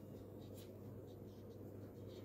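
Faint scratching of a pen writing on paper, over a steady low hum.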